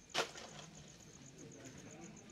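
Insect chirping in a steady, rapid high pulse of about nine a second. A single short, sharp sound, the loudest thing here, stands out just after the start.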